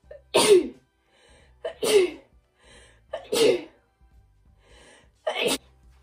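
A young woman coughing hard four times, each cough a short explosive burst, about one and a half to two seconds apart.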